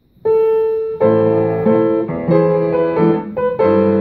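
Upright piano playing: a single note starts about a quarter second in, then full chords over a bass line from about a second in.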